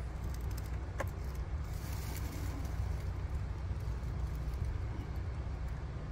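A steady low rumble, with one brief sharp click about a second in.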